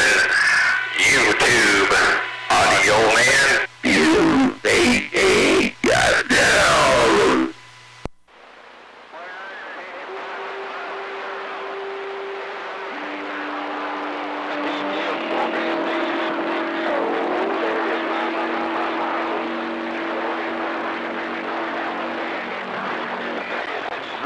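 CB radio receiver putting out a loud, choppy, garbled incoming transmission for about the first seven seconds, with an undertone of hum; the words cannot be made out. A click ends it, and after it comes steady band static hiss with a few faint steady carrier tones that come and go.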